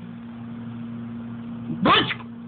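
A baby's short babbled syllable, like "ba", rising and falling in pitch near the end, over a steady low hum.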